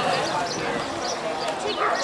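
Indistinct children's voices and chatter with water splashing as kids play in a swimming pool.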